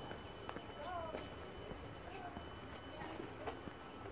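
Faint outdoor background with distant voices of other people and a few light clicks, under a thin steady high tone.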